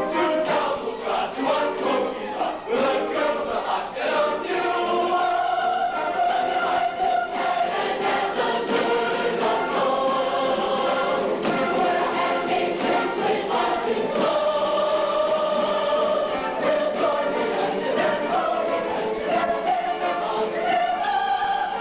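A large mixed chorus singing a show number together, with several long held notes.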